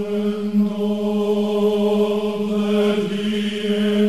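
Sacred vocal group singing one long held chord that begins just before and changes shortly after.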